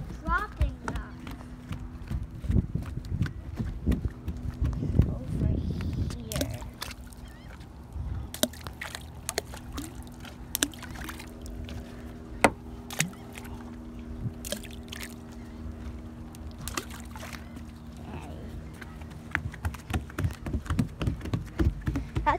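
Water sloshing against a wooden dock, with small splashes and scattered knocks as a child throws rocks into it. A steady low hum sets in about a third of the way through and fades out near the end.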